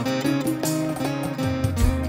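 Instrumental passage of a Bengali song: an acoustic guitar strummed over keyboard accompaniment, with held notes and changing chords.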